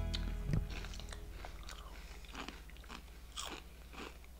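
Crunching and chewing of cheese Twisties, a crispy puffed snack, with separate sharp crunches every second or so. Music fades out in the first second.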